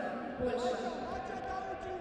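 Greco-Roman wrestlers' feet and bodies thudding on the wrestling mat in an arena hall, a few short dull thumps, under shouted voices.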